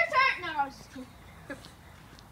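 A person's voice calls out briefly, falling in pitch, followed by two faint short knocks.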